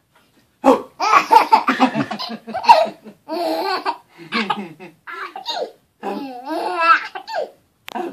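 Baby laughing hysterically in a long string of belly-laugh bursts with short breaths between, starting about half a second in.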